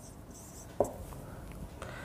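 Marker pen writing on a whiteboard: faint scratching strokes, with one sharp tap about a second in.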